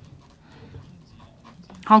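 A man's speech breaks off, leaving soft breath sounds on a close microphone over faint room hum. His speech starts again near the end.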